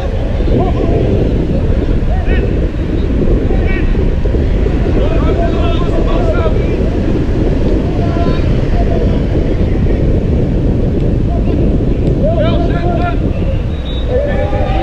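Wind buffeting a camera microphone, a steady low rumble, with scattered distant shouts from football players across the pitch, clustering around the start, the middle and near the end.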